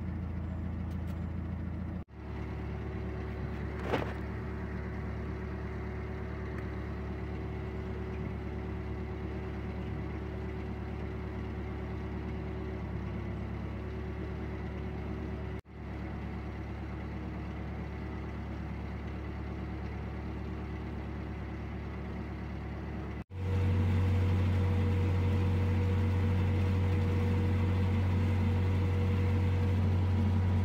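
A narrowboat's diesel engine running steadily under way, a low, even drone. It drops out for an instant three times and is louder after the last break, about three-quarters of the way through. There is a single click about four seconds in.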